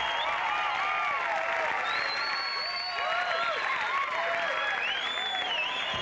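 Studio audience applauding and cheering, with many short, high shouts over the clapping.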